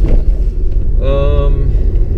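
Steady low road and engine rumble inside a moving car's cabin, with a short held voice sound, like an 'uhh' or hum, about a second in.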